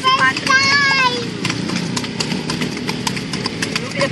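A horse's hooves striking a paved road in a steady clip-clop as it pulls a kalesa, a Philippine horse-drawn carriage, at a walk or trot.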